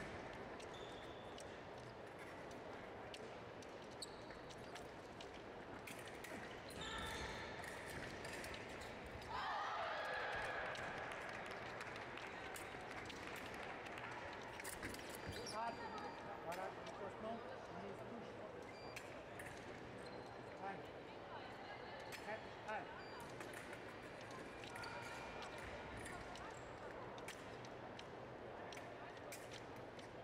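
Fencing bout in a large hall: sharp clicks and thuds of foil blades and fencers' footwork on the piste, over a background of voices, with a loud call about ten seconds in.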